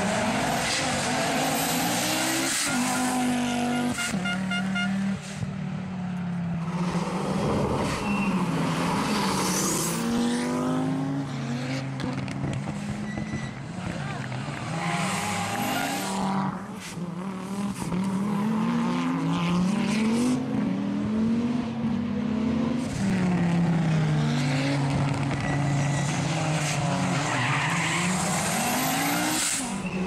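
Historic rally cars driven hard on a closed stage, their engines revving up and dropping back again and again as they accelerate and change gear, one car after another.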